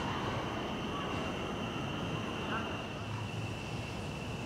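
Steady outdoor evening ambience: a constant high-pitched drone, typical of an evening insect chorus, over a low rumble of distant city traffic, with a faint short chirp about two and a half seconds in.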